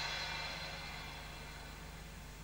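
The fading tail of a noisy whoosh-like swell, dying away slowly over a steady low hum.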